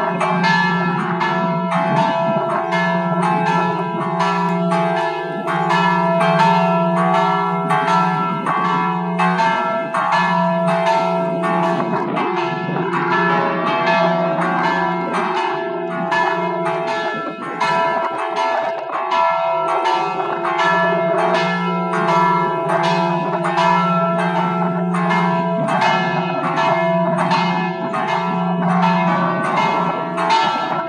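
Peal of five church bells rung together in Maltese style, a continuous stream of overlapping clapper strikes over a sustained ringing hum. The five bells, cast between 1761 and 1811, are tuned F#, E, C#, C and a big bell on low C#.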